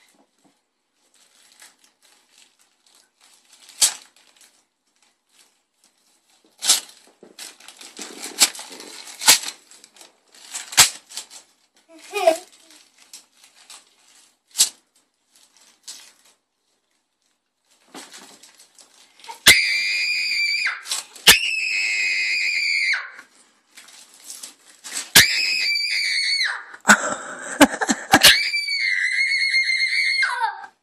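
Wrapping paper crackling and tearing as a small present is unwrapped, then a young girl screaming with delight in several long, very high-pitched shrieks through the second half.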